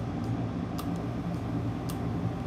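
Steady low hum of workbench equipment, with three faint sharp ticks about a second apart.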